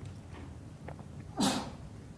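Faint room tone in a pause of speech, broken about one and a half seconds in by a single short, sharp, breathy noise from a person, like a quick breath or sniff.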